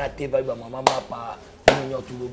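A man talking animatedly, broken by two sharp smacks, the first a little under a second in and the second, louder one near the end.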